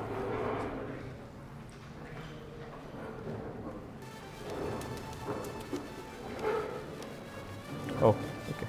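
AI-generated 80s-style pop track with heavy drums and synth pads, played faintly through a laptop's speakers and heard in the room, starting about halfway through.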